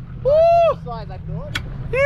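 A man's loud "Woo!" whoop of excitement, rising then falling in pitch. A small boat's outboard motor hums steadily underneath.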